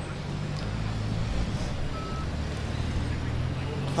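A car's engine running close by in street traffic, a steady low hum that swells slightly about a second in. A short high beep sounds about halfway through.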